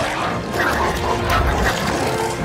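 Film sound design: alien creatures snarling and growling with gliding, screech-like calls while they attack, over orchestral score music.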